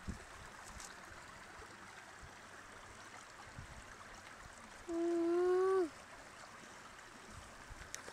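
Steady rush of stream water. About five seconds in, a voice gives one wordless held sound, about a second long, that drops in pitch at the end; it is the loudest thing here.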